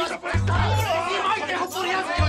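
Several men shouting over one another during a scuffle, over background music with long, heavy bass notes.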